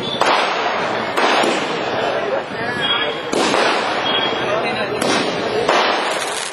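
Fireworks going off in a series of loud bursts, about five spread unevenly, each trailing off into crackling.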